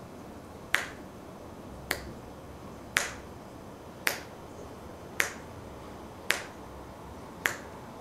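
A man snapping his fingers slowly and evenly, seven sharp snaps a little over a second apart, with quiet room tone between them.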